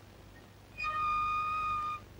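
A home-made organ pipe made from a toffee tin, blown by mouth, sounding one high, steady note for about a second. The note starts a little under halfway in and cuts off sharply.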